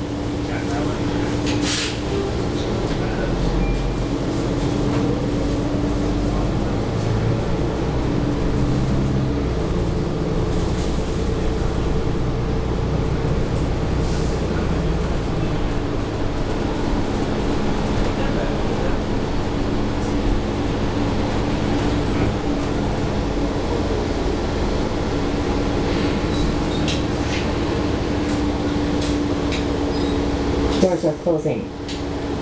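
Cabin noise of a 2017 New Flyer XDE40 diesel-electric hybrid bus (Cummins L9 engine, Allison EP40 hybrid drive) under way: steady running and road noise with a constant hum.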